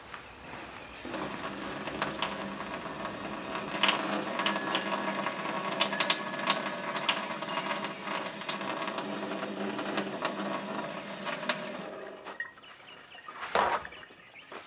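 A steady mechanical sound with several held high tones and scattered clicks. It starts about a second in and cuts off suddenly near the end.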